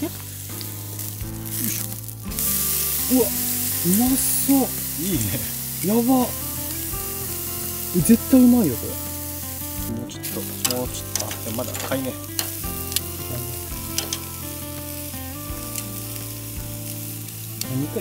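A thick beef steak sizzling on a wire mesh grill over a campfire kept at low heat, so it cooks slowly. Scattered small crackles and pops come from about the middle onward.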